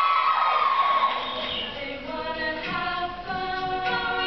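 All-female a cappella group singing in close harmony with no instruments. One high line swoops up and back down in the first second, then the voices hold steady chords.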